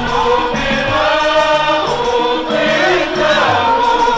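A group of men singing an Islamic devotional chant in praise of the Prophet, a maulid qaswida, voices together through microphones and a PA.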